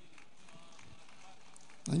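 A pause between speakers: faint, steady room noise of a large hall with faint distant voices. Near the end a man starts speaking over the PA.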